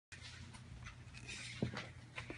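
Faint rustling and handling of a large wallpaper sample book as its stiff cover is swung open, with a soft thump about one and a half seconds in.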